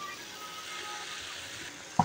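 Faint, steady sizzling of amaranth-leaf curry cooking in a steel pot on the stove.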